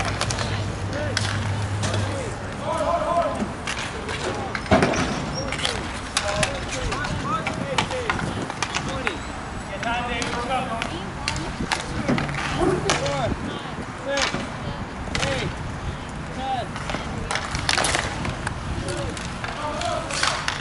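Roller hockey play: inline skate wheels rolling on the rink surface, with frequent sharp clacks of sticks and puck, the loudest about five seconds in, and players' shouts.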